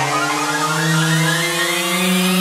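Psytrance breakdown with no beat: a sustained synthesizer tone slowly rising in pitch, a build-up riser leading into the drop.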